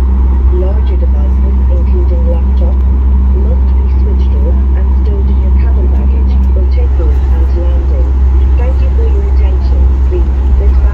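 Cabin noise inside a Boeing 737 MAX airliner: a steady low rumble with the murmur of passengers' voices underneath. A steady hum under the rumble stops about two-thirds of the way through.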